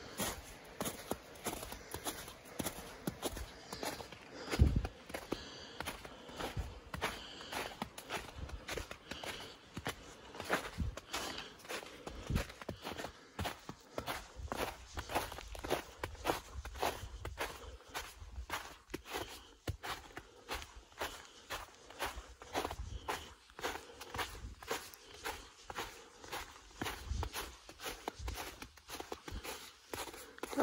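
Footsteps in fresh snow as a hiker walks at a steady pace, with a louder low thump about four and a half seconds in.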